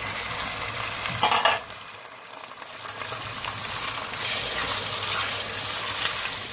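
Raw chicken pieces sizzling in hot oil in an enamel pot as they are stirred with a silicone spatula. The sizzle flares louder about a second in, dies down briefly, then builds again.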